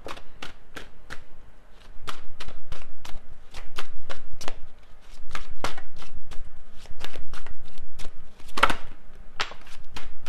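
Tarot deck being shuffled by hand: a fast run of sharp card slaps and flicks, lighter for the first two seconds, then louder.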